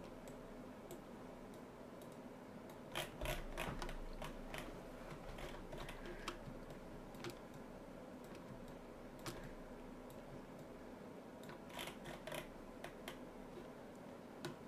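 Scattered clicks of a computer keyboard and mouse, in small clusters about three seconds in and again near twelve seconds, over a faint steady hum.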